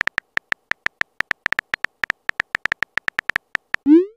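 Phone on-screen keyboard key-click sounds from a texting-story app, about two dozen quick taps as a message is typed out letter by letter. Just before the end comes a short rising swoop, the loudest sound.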